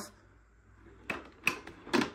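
A Dyson DC02 cylinder vacuum's mains cable reels back into the machine by itself. About a second in come three sharp clicks and knocks as the plastic plug is drawn in against the body, the last one the loudest. The self-rewinding cable is a fault common to DC02s.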